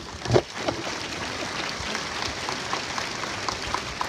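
An audience applauding: a dense, steady patter of many hands clapping that sets in with a loud burst just after the start.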